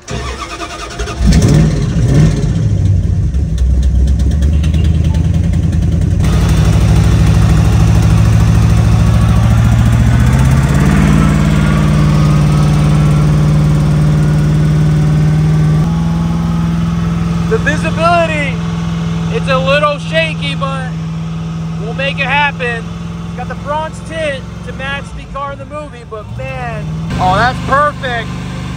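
The Tumbler replica's engine, heard from inside the cabin, starts about a second in. It pulls away with its note climbing in steps, then holds a steady cruising note. Later it settles quieter under other sounds.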